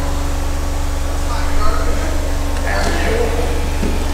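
A steady low hum with a fainter steady tone above it, under faint, indistinct voices in the room. No thuds or impacts stand out.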